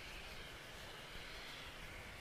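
Faint, steady background hiss with no distinct event.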